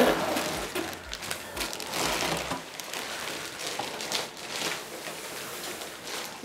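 Clear plastic poly bag crinkling and rustling as a bagged backpack is slid out of a cardboard box and laid down, busier in the first couple of seconds and quieter after.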